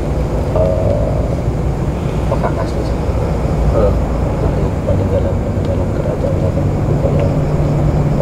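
A steady low rumble of background noise, with men's voices talking quietly over it in short, broken snatches.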